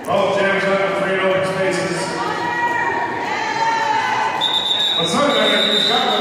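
Several voices shouting and calling at once, starting suddenly, in a large arena hall during roller derby play. About four seconds in, a long steady high-pitched whistle tone sets in and holds.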